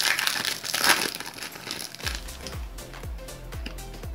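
Foil trading-card pack wrapper crinkling and tearing as it is opened by hand. About two seconds in, background music with a steady low beat starts under it.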